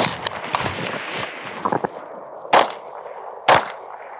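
A carbine shot right at the start, then, after the switch to a handgun, two pistol shots about a second apart, about two and a half seconds in and near the end.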